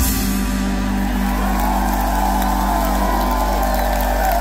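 The last chord of a live rock song ringing out from amplified electric guitars and bass as the drums stop, with the audience cheering and whooping over it.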